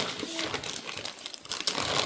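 Clear plastic bag crinkling as it is pulled open and handled, an irregular crackle.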